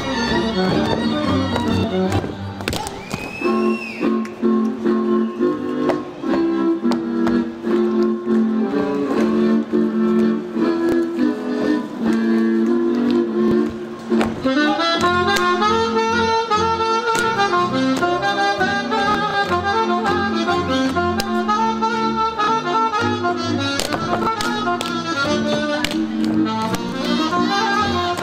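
Live Hungarian village band playing Kalotaszeg dance music on fiddles, double bass and saxophone, with the dancers' boot slaps and stamps cracking through it. About halfway through, a new, busier melodic line takes over.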